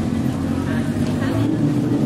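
Steady low rumble of a motor vehicle engine running in the street, with faint voices under it.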